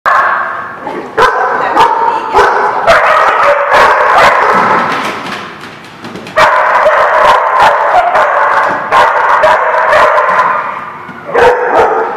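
Dogs barking and yipping at play in a near-continuous din. It dips for a moment about five seconds in and picks up again about a second later.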